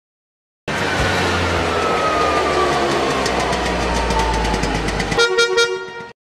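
Logo intro sound effect for a news channel: a loud noisy swell with a slowly falling tone and quickening ticks, ending about five seconds in on a brief held chord.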